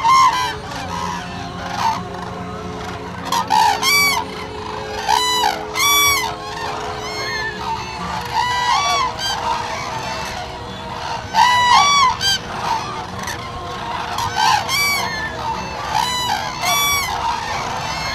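A flock of common cranes calling: loud trumpeting calls, often several overlapping, that come in clusters every two to three seconds.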